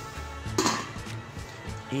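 A stainless-steel lid clinking against a stovetop smoking pot about half a second in, over background music.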